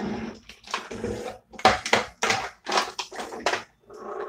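Small plastic lipstick and lip gloss tubes clattering as someone rummages through a drawer of lip products: an irregular run of short knocks and rattles.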